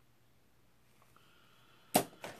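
Quiet room tone, then one short, sudden loud sound just before the end.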